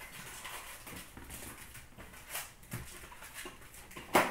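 Plastic wrapper and foil hockey card packs being handled: a string of short crinkles and rustles.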